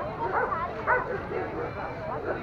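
A dog barking, with people talking around it.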